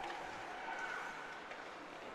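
Faint ice-hockey arena ambience: a low, even background hiss of the rink and crowd with no distinct events.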